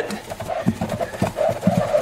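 Cloth rag rubbing quickly in circles over the finished top of a vintage Gibson L-00 acoustic guitar, buffing off Renaissance wax: a quick, even run of rubbing strokes, about four a second.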